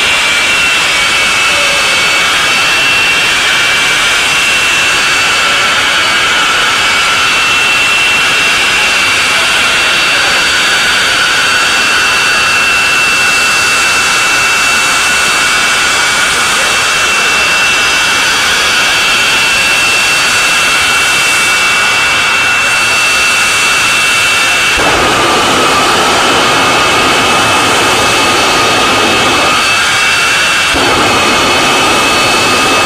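Jet engine of a jet-powered drag car running on the strip: a steady high-pitched whine with several held tones over a dense rush. About 25 seconds in, a deeper rumble suddenly joins it.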